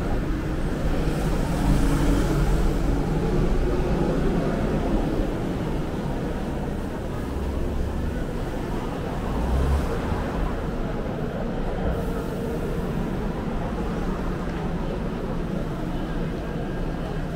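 Street ambience dominated by steady road traffic, with a low engine rumble from passing vehicles that swells about halfway through.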